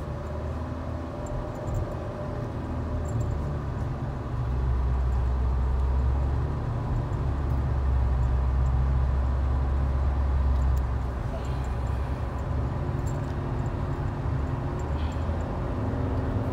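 Inside a car's cabin, the low rumble of the engine and tyres as the car pulls away and drives on; it grows louder about four seconds in and eases off somewhat near the end.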